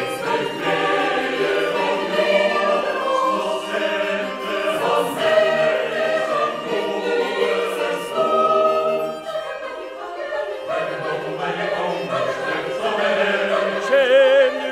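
Chamber choir singing a Norwegian folk-song arrangement in sustained, many-part chords; the low voices drop out briefly about ten seconds in.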